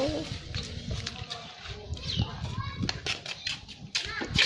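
Faint voices and small vocal sounds, with scattered light knocks and taps.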